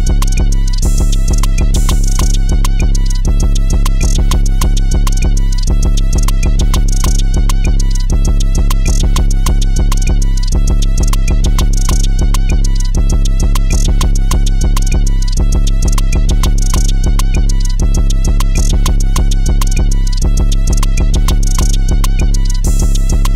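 Instrumental Flint-style hip-hop beat: held melody notes over a deep, steady bass and rapid percussion hits, in a loop that repeats about every two and a half seconds.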